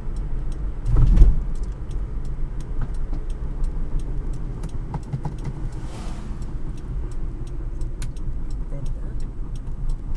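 Cabin noise of an electric-converted Toyota Tercel driving at about 25 mph: a steady low road and tyre rumble with scattered light rattles and clicks, and a louder bump about a second in. The electric drive adds no engine sound, so the road noise is what is heard.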